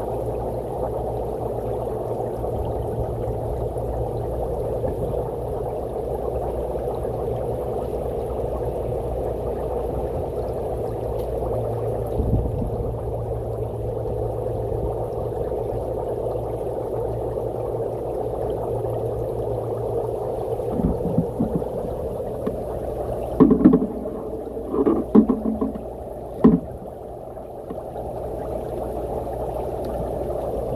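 Air bubbling up through water from a homemade PVC pipe diffuser fed by a small air pump: a steady bubbling and gurgling with a low hum underneath. A few sharp knocks near the end.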